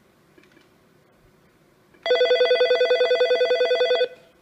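Nortel T7316 digital desk phone's electronic ringer starting to ring about halfway in, for an incoming call: a loud, rapidly warbling trill of several pitches, about a dozen pulses a second.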